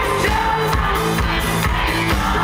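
Live pop-rock band playing loud on stage: drums, bass and guitar keeping a steady dance beat with sustained bass notes, heard from the crowd close to the stage.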